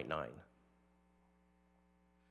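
A faint, steady electrical mains hum, a stack of even tones, in the meeting's audio feed. It is heard once the last spoken word trails off about half a second in.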